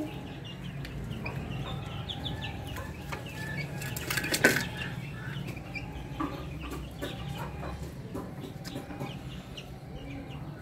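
Young Aseel–desi mix chickens calling in short, high cheeps and clucks over a low steady hum. A brief sharp noise about halfway through is the loudest moment.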